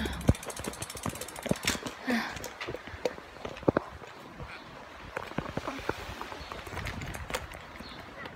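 Bicycle being ridden, rattling with irregular sharp clicks and knocks.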